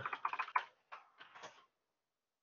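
Computer keyboard typing: a quick run of keystrokes, a short pause, then a few more keystrokes ending about a second and a half in.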